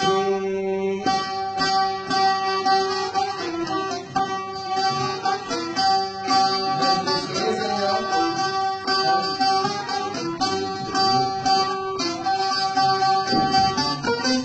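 Violin and bağlama (long-necked Turkish lute) playing an instrumental passage of a Turkish folk tune together, the violin holding long notes over the bağlama's quick plucked strokes.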